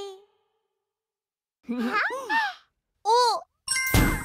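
A cartoon character's voice making two short wordless worried sounds, each rising and falling in pitch, about a second apart. Near the end a bright chime rings as a magical puff effect begins. A held note fades out at the very start.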